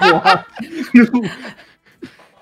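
People laughing: bursts of chuckling, loudest at the start and again about a second in, trailing off near the end.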